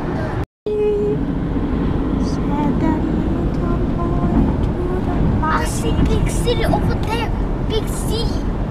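Steady road and engine rumble inside a moving car at highway speed, cutting out for a moment about half a second in. From about five and a half seconds, high-pitched voices are heard over the rumble.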